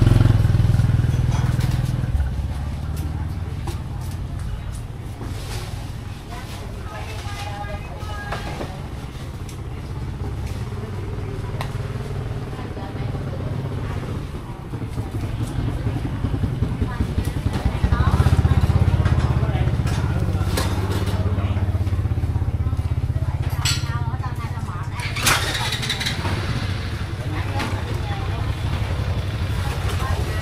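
Motor scooter engines running close by, with a low steady rumble that is loudest at the start and again from about two-thirds of the way through, under the chatter of market voices.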